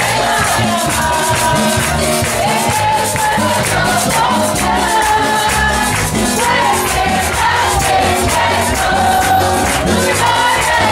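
A congregation singing a worship song together over live band music, with hand-clapping keeping a steady beat.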